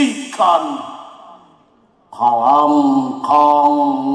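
A man declaiming a poem through a microphone and PA in a dramatic, drawn-out voice, words trailing off into hall echo. After a short pause he starts one long, held phrase.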